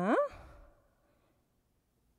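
A woman's short questioning 'hein?', rising in pitch and breathy, trailing off into a faint exhale within the first second, then quiet.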